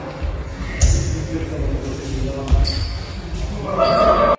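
Futsal ball thudding on a sports hall floor as it is dribbled, with a heavy thump about a second in and another about two and a half seconds in. Voices echo in the hall.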